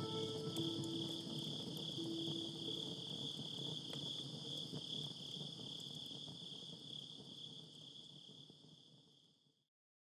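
Crickets chirring steadily in a high, even trill, while a few held low notes of the song's accompaniment die away in the first couple of seconds. The cricket sound fades out near the end.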